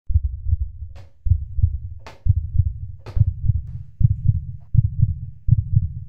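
Deep thudding pulses in a heartbeat-like rhythm, a cluster of two or three thumps about every second. A short bright hiss cuts across near the first, second and third seconds.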